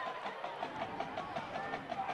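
Faint stadium crowd hubbub, a steady low murmur with a few brief distant voices in it.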